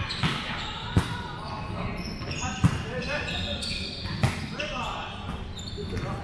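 Volleyball being struck during a rally: four sharp slaps of the ball, the loudest a little past the middle, ringing in a large hall. Short high squeaks of sneakers on the hardwood court come in between.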